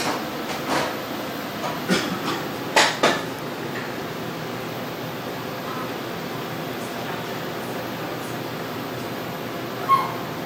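Steady hum of fans in a small treatment room, with a few sharp clicks and knocks in the first three seconds, the loudest about three seconds in. A short beep sounds at the very end.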